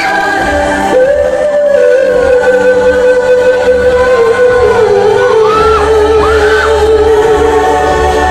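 Female singer singing live into a microphone over amplified music in a large hall, holding one long note from about a second in that steps down slightly partway through.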